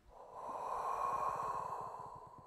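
A woman's long, forceful exhale, a steady breathy hiss that swells over the first half-second and fades near the end. It is the controlled out-breath that carries her up through a Pilates roll-up.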